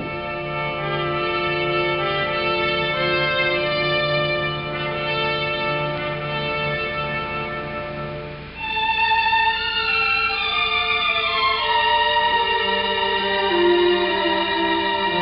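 Slow, sombre background score of long held string notes over a sustained low tone; about eight and a half seconds in the low tone drops away and a higher, louder phrase enters.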